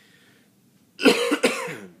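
A man coughing twice in quick succession, starting about a second in.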